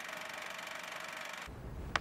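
Film projector sound effect: a steady, rapid mechanical clatter. A low rumble joins in near the end.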